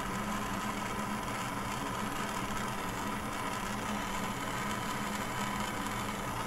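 Jeweler's gas soldering torch burning steadily, its flame played over a silver joint to bring the solder to flow: an even hiss with a faint low hum under it.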